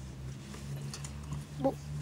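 Steady low hum inside a car cabin, with a brief voiced sound from a child near the end.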